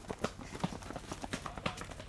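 Running footsteps of several people on a hard dirt path: quick, irregular footfalls, several a second, close to a camera that is itself running.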